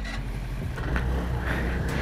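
125cc scooter engine running at low speed, picking up a little about a second in, with a steady low rumble and a growing noisy hiss.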